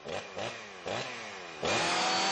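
Cartoon tornado wind sound effect: a rushing roar with repeated swooping sweeps, a few a second, swelling louder about one and a half seconds in.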